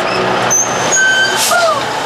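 Renault Kangoo van pulling up: a rush of engine and tyre noise with brief high brake squeals, and a short falling squeak about a second and a half in.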